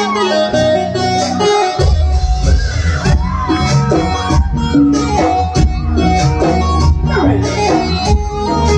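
Live band music through a stage PA: an electric bass guitar and drums keeping a steady beat under melody instruments, with a heavy bass line coming in strongly about two seconds in.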